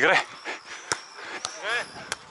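A volleyball struck in a beach volleyball rally: one sharp smack about a second in and a fainter one about half a second later, between a player's short shout at the start and another short call near the end.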